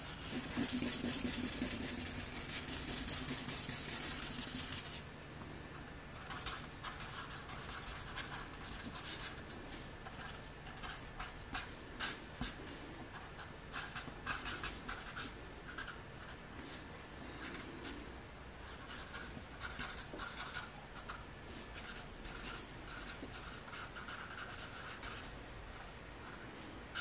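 Felt-tip marker rubbing back and forth on paper while coloring in: a steady, dense scrubbing for the first five seconds, then quieter, shorter strokes.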